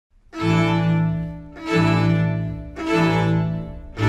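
Bowed string instruments playing in a low register: three long, separately bowed notes, each starting firmly and fading away, beginning about a third of a second, just under two seconds and just under three seconds in.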